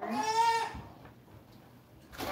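A young person's voice making one drawn-out, wordless vocal sound, slightly wavering in pitch, lasting under a second at the start.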